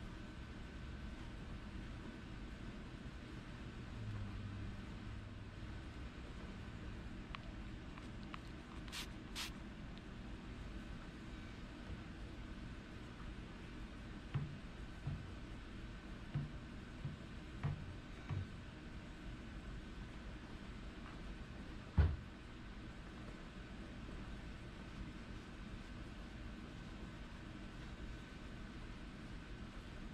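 Soft wiping of a microfiber towel and foam applicator over a painted car door panel over a faint steady hum. Two sharp clicks come about nine seconds in, a few soft knocks follow in the middle, and one louder knock comes a little after twenty seconds.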